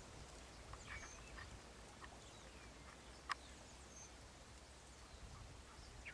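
Near silence with a few faint, short bird calls scattered through it and one sharp click about three seconds in.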